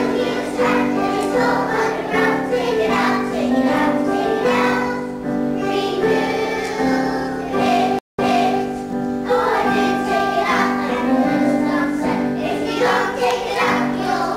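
A group of young children singing a song together, with a brief break in the sound about eight seconds in.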